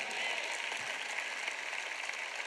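Audience applause: many people clapping steadily.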